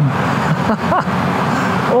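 Honda CB1000R's inline-four engine running steadily at cruising speed, echoing inside a road tunnel, over a constant rush of road and wind noise.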